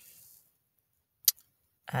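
Near silence broken by one short, sharp click a little over a second in; a woman's voice starts speaking right at the end.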